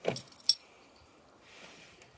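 Tractor ignition key and its key ring jingling as the key is pushed into the ignition lock: a quick run of clinks in the first half second, ending in one sharp click.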